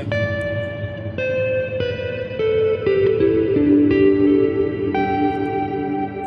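Electric guitar played softly, single sustained notes changing about once a second and ringing into each other, through a MOD Series reverb pedal set high and long. The reverb's level is modulated by picking dynamics, so at soft playing the reverb stays full.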